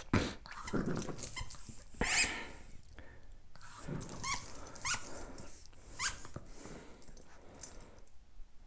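Small curly-coated dog making a series of short growls and whines, some rising in pitch, while playing with a ball in its mouth.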